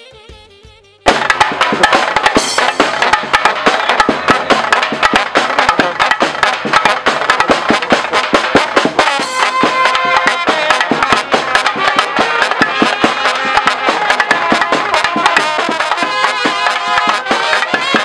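A Balkan brass band of trumpets, large brass horns and a bass drum with cymbal playing a folk tune, coming in loud and sudden about a second in after a faint stretch of fading music, with dense drum strikes throughout.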